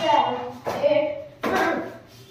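A voice calling out the dance rhythm in three short sung-out syllables, about half a second each, with no music under it.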